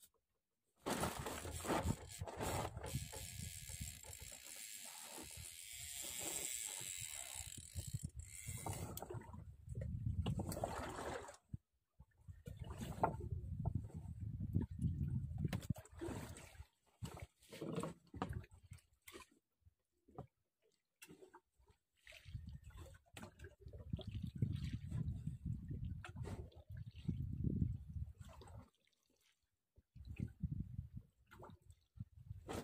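Sea water lapping and splashing around a small boat, with wind rumbling on the microphone in patches. The sound cuts out briefly several times.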